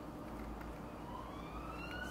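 Faint wail of an emergency-vehicle siren, its pitch rising slowly from about a second in, over a low steady room hum.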